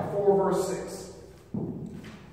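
A man's voice preaching in a church hall, the phrase fading out after about a second, followed by a brief noise near the end.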